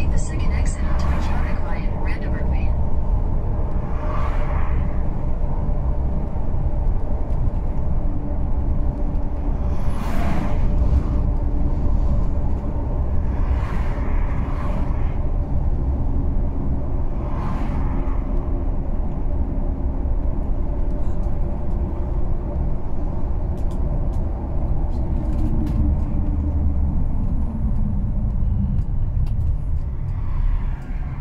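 Steady engine and road rumble heard from inside a moving vehicle's cab. Near the end the engine note falls as the vehicle slows.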